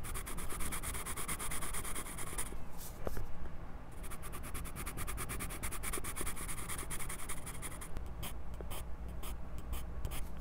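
Graphite pencil scratching on sketchbook paper in rapid short strokes, picked up very close by a lavalier microphone clipped to the pencil. The strokes stop briefly about two and a half seconds in, start again about a second later, and come as fewer, separate strokes near the end.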